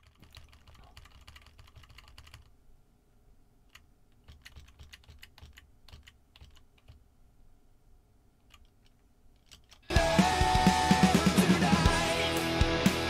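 Faint, scattered clicks of a computer keyboard and mouse. About ten seconds in, loud playback of a rock drum cover, drum kit with guitar, starts abruptly.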